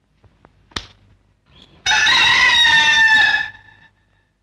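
A rooster crowing once: a single loud call about a second and a half long, starting just under two seconds in and dropping slightly in pitch as it ends. A faint sharp click comes about a second before it.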